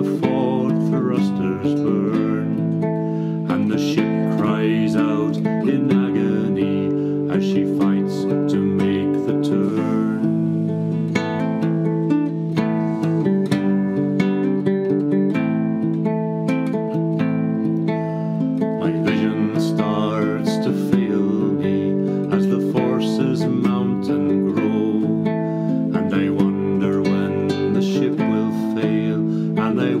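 Nylon-string classical guitar playing a solo instrumental passage of picked chords. A man's singing voice comes back in right at the end.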